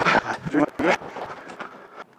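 A man breathing hard and out of breath: a few short, noisy breaths, loudest in the first second.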